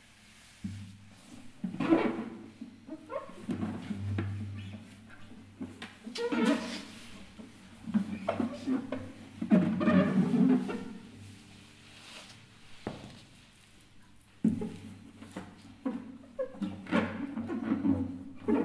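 Acoustic guitar played as a sound object: irregular, separate bursts of rubbing, knocking and scraping on its body and strings, a second or two apart, mixed with voice-like noises from the performer.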